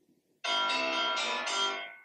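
Mobile phone ringing: a bell-like ringtone melody of a few notes that starts about half a second in and fades away near the end.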